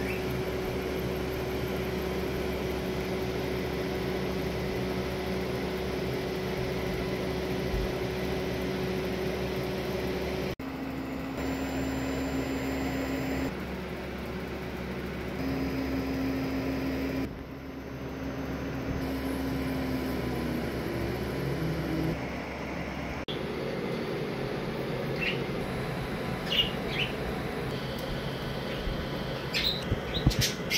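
Longer Ray5 10W diode laser engraver running while cutting 6 mm wood: a steady fan hum with pitched motor tones that start, stop and change abruptly a few times as the laser head moves. Several short chirps near the end.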